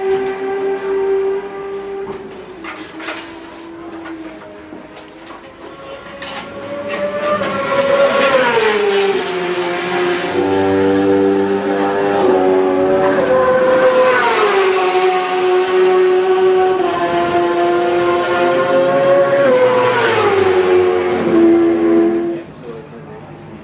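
Honda CBR1000RR superbike's inline-four engine running on its stand, held at steady revs and slowly raised and lowered several times. A few sharp clicks are heard over it.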